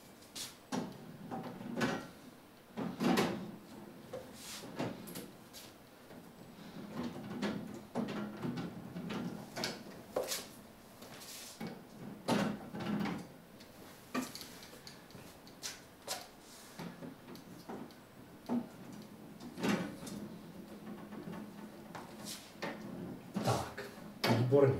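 A metal frame being fitted onto the top edges of the glass panels of a collapsible glass terrarium: a series of irregular knocks, clicks and light scrapes of metal against glass.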